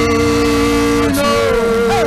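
A man singing long held notes into a close microphone, each note sliding in pitch as it ends.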